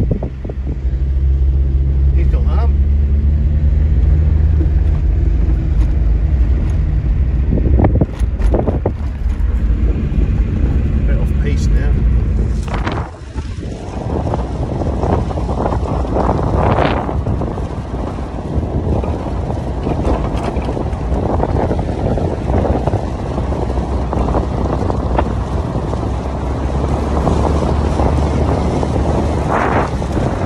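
Car engine droning steadily as it drives over desert sand, heard from inside the cabin with a few short knocks and bumps. A little under halfway through it cuts to heavy wind rushing over the microphone, with the engine and tyres running underneath.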